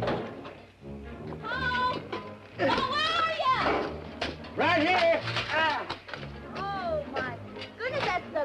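Excited high-pitched shouts and calls from voices, in short rising-and-falling bursts, over film score music.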